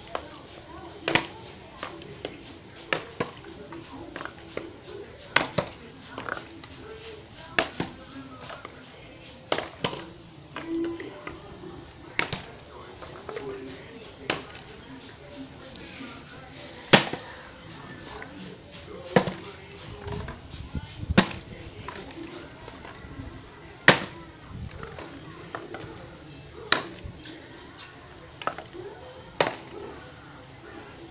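Plastic water bottle being flipped again and again and landing on concrete: a series of sharp clatters and taps, roughly one every one to two seconds, the loudest about halfway through and again about two-thirds through.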